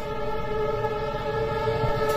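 Diesel locomotive horn sounding one long, steady multi-note blast over the low rumble of the train running on the track.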